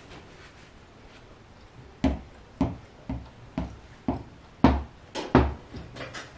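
Fabric scissors snipping through cotton quilting fabric, a run of sharp snips about two a second starting about two seconds in.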